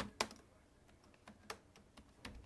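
Laptop keyboard keystrokes: a few separate, irregular key taps, the clearest about a fifth of a second in and at about a second and a half.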